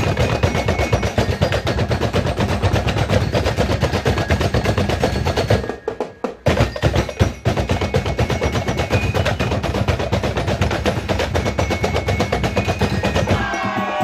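A drumblek ensemble playing a fast, dense rhythm on large plastic barrel drums, with a short break about six seconds in before the beating starts again.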